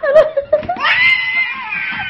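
Baby squealing: a short high cry, then one long high-pitched squeal starting just under a second in.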